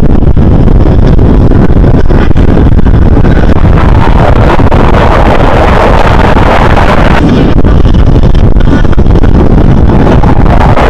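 Loud jet noise from F-16 fighter jets flying overhead, with wind on the microphone; the noise turns harsher and brighter about four seconds in.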